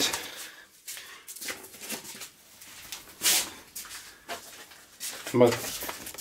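Quiet handling sounds: scattered light rustles and small taps as a paper photo is handled over a wooden table, with one short hiss about three seconds in.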